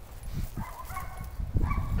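German shepherd whining, a thin high whine held for about a second in the middle, over low thumps.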